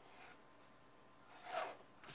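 Faint pencil stroke along a plastic ruler at the start, then a louder short scraping swish about a second and a half in as the ruler is slid across the paper.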